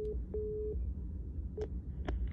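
Ringback tone from a desk telephone's speaker: a steady mid-pitched tone sounding twice in a double ring, each under half a second with a short gap. It is the sign that the transferred call is ringing through at the other end. A short blip and click follow about a second and a half in.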